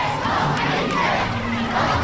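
A crowd of many voices shouting together.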